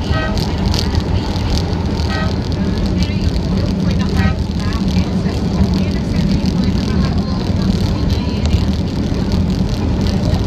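MRT Line 3 light-rail train running on its elevated track: a steady low rumble that holds through the whole stretch.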